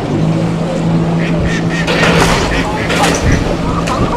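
Hire cruiser's motor running with a steady hum that stops about three seconds in, with a burst of rushing noise shortly before it stops.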